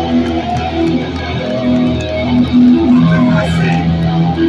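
Hardcore punk band playing live and loud: electric guitar riff with held notes over bass and drums with cymbal hits.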